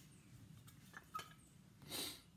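Near silence, with a couple of faint clicks about a second in as the cast-iron pitcher pump's handle and plunger-rod assembly is handled, and a short hiss near the end.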